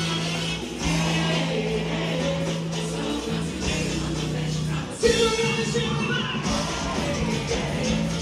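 Live axé music played loud over a trio elétrico sound system, with singing. A louder passage starts sharply about five seconds in.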